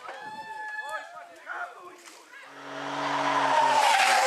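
Spectators shouting for the first couple of seconds. Then a rally car's engine is heard approaching at high revs, growing steadily louder until the car passes close by at the end.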